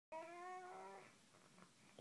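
An infant's single drawn-out whine, one held note about a second long that rises slightly in pitch, in the first half.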